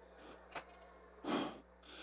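A quick breath drawn in close to a handheld microphone, a little past a second in, with a faint click shortly before it and a low steady hum of the sound system under a pause in speech.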